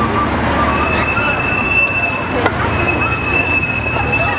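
Street crowd of marchers walking and chatting, with a steady high-pitched squealing tone coming in just under a second in and holding, briefly dipping about halfway.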